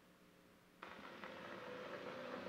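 Faint steady hum, then just under a second in a low, steady background noise switches on abruptly and holds.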